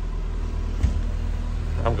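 Idling engine heard from inside the motor home: a steady low drone, with one light knock a little before the middle.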